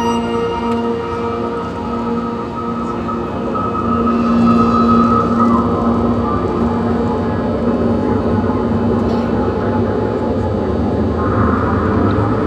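Marching band opening its show with long, held chords that swell louder about four seconds in and again near the end, over a steady wash of stadium noise.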